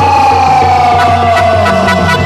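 A male singer holds one long note that slides slowly down in pitch and ends near the close, over a steady low drum beat.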